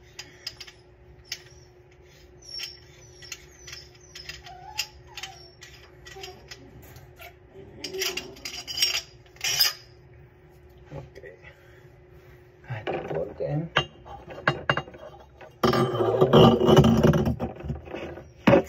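Plumbing fittings under a sink being hand-tightened and handled: a run of light metallic clicks and clinks, with a faint steady hum underneath. In the last few seconds the handling gets louder and denser.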